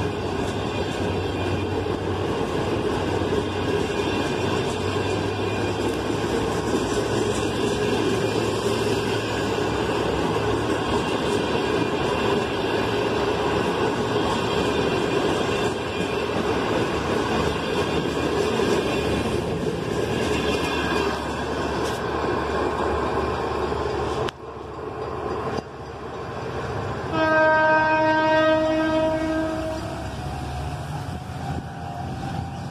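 Passenger coaches rolling past close by, with a steady rumble and clatter of wheels on the rails. After an abrupt break near the end, a train horn sounds one long, steady blast lasting about three seconds.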